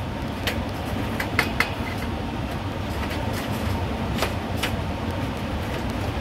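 Steady low machinery rumble of HVAC plant, with a handful of short sharp clicks as the filters are handled.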